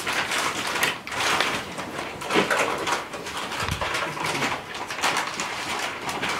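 Knife slicing and sawing through a raw pork hind leg: irregular scraping, rasping cut strokes, with a low thump a little past the middle.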